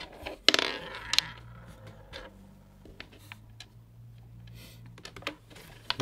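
Small hard game pieces of a Klask table game clicking and tapping on the wooden board as the ball and magnetic biscuits are reset after a point: a louder clatter about half a second in, then a handful of separate light clicks spread over the following seconds.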